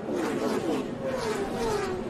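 Several NASCAR race trucks' V8 engines, their engine notes gliding down in pitch together as the trucks pass and slow through a multi-truck crash.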